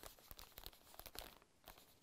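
Faint, irregular scratching and crinkling of a pen writing a label on a plastic sandwich bag.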